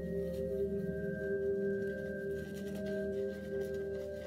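Background ambient music of sustained, overlapping ringing tones, like a singing bowl. Under it is the faint swish of a horsehair shaving brush working lather on the face.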